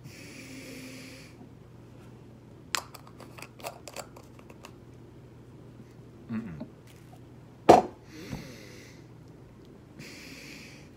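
A man breathing out hard through his nose in heavy snorting exhales, at the start and again near the end, still reeling from a spoonful of Vegemite. In between come small clicks and taps of the glass jar and its plastic lid being handled, then one sharp knock, the loudest sound.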